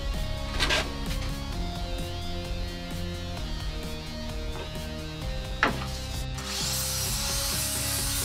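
Background music with sustained notes over wood being handled on a mitre saw table. There are short scrapes about half a second in and again just before six seconds, then a steady hiss of the acacia board sliding across the saw table near the end.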